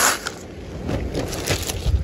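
Plastic zip-top seed bags and paper seed packets crinkling and rustling as a gloved hand sorts through them, with one louder crinkle at the start and quieter rustles after it. A low wind rumble sits under it on the microphone.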